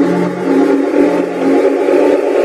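Electronic house/tech music in a breakdown: held synth chords with no kick drum, under a noise sweep that rises slowly in pitch.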